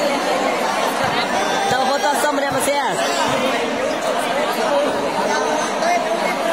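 Crowd of spectators chattering, many overlapping voices carrying on steadily in a large, echoing hall.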